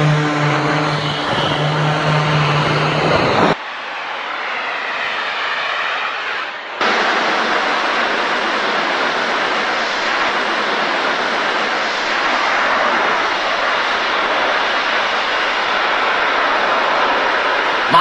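Music with a steady held chord for the first few seconds. From about seven seconds in, the loud steady rushing noise of a jetpack's thrust takes over as the pilot flies upward.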